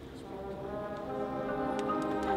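Marching band entering on a held brass chord right at the start, swelling louder as it is sustained.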